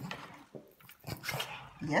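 Small black dog making a few short, breathy sniffing sounds close to the microphone.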